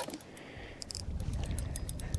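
Spinning reel being cranked while a hooked walleye is played on a jig rod, giving faint, irregular clicks over a low rumble.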